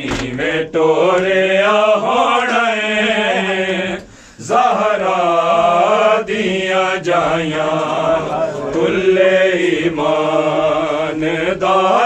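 Men's voices chanting a noha, an Urdu lament, in long drawn-out phrases over a steady low held note, with a brief pause about four seconds in.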